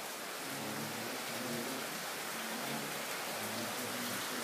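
Steady background hiss: an even noise with no distinct sounds in it.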